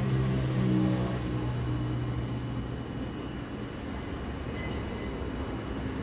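A steady low hum of background noise, with a brief voice in the first second or so.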